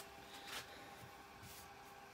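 Near silence: quiet room tone with a faint steady hum and one faint brief rustle about half a second in.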